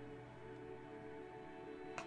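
Soft ambient background music of steady held tones. Right at the end comes a single light tap, as a tarot card is set down on the table.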